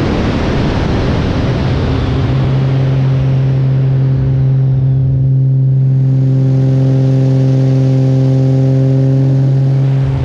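Extra 330LX aerobatic plane in flight: a rush of wind noise fades over the first few seconds, giving way to the steady, even drone of its six-cylinder Lycoming engine and propeller.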